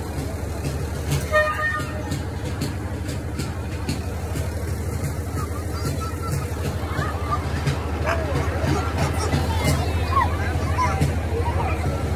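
Low steady engine rumble of a slow-moving parade vehicle, with a short horn toot about a second in. Scattered voices and calls from the crowd along the street.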